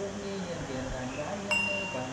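A small metal ritual bell struck once about one and a half seconds in, its clear tone ringing on, over a voice chanting prayers in long, steady held notes.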